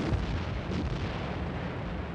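A continuous rumble of distant naval gunfire and explosions, with a small thud just after the start, slowly fading.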